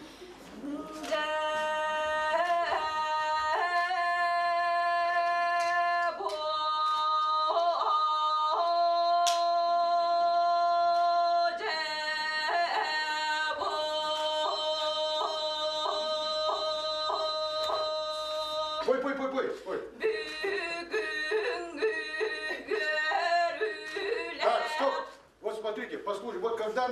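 A woman singing a Sakha (Yakut) toyuk solo, unaccompanied. She holds long notes broken by kylyhakh, quick throat-made flips between pitches that work like grace notes.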